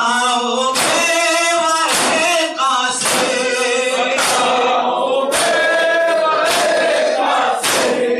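Men's voices chanting a noha in unison, a lead voice into a microphone with the congregation, over rhythmic matam: sharp hand strikes on the chest landing together about once a second, seven in all.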